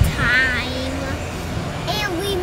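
Children's voices: a brief high call gliding up and down, then a held lower note, over a steady low rumble.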